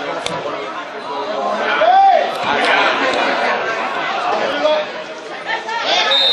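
Chatter of many overlapping voices, spectators and players talking and calling out at a small football ground, with one voice calling out louder about two seconds in.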